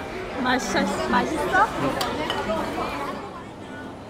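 Voices and chatter, with a single sharp click about two seconds in; quieter near the end.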